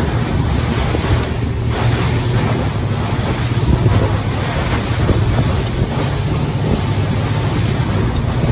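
Boat under way at speed over choppy sea: water rushing and splashing along the hull and wake over a steady low engine drone, with wind buffeting the microphone.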